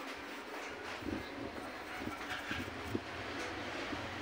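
Faint handling sounds of a small stainless steel coffee pot being lifted out of a plastic cup of caustic cleaning solution: a few light knocks over steady background noise.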